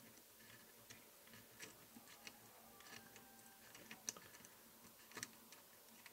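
Near silence broken by faint, scattered small metallic clicks and ticks as fingers spin a loosened nut off a chassis-mounted input connector, with two slightly louder clicks about four and five seconds in.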